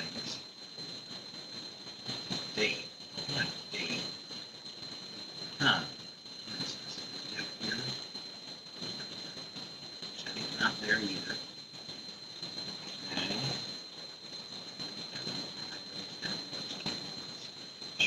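Faint, scattered muttering and small desk or handling noises over a steady high-pitched whine, picked up through a camera's built-in microphone instead of the studio microphone.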